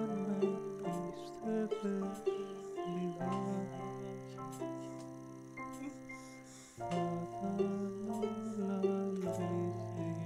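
EyeHarp, a digital instrument played by eye gaze, playing a slow melody over held bass notes and chords from an electronic keyboard accompaniment. The harmony changes about three seconds in and again near seven seconds.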